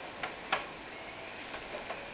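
Footsteps of socked feet on a wooden open-riser staircase: two short knocks about a quarter and half a second in, the second louder.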